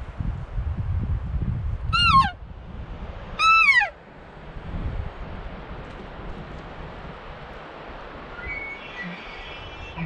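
Two short cow elk mews, each falling in pitch, about a second and a half apart, over wind rumbling on the microphone. A few faint higher chirps come near the end.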